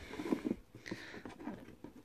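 Cardboard gift box handled by hand: a few soft taps and light scrapes of fingers on the card.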